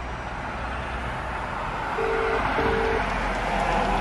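Telephone ringback tone from a smartphone's speaker: one double ring, two short beeps about half a second apart, heard while the call connects. Steady traffic noise runs underneath.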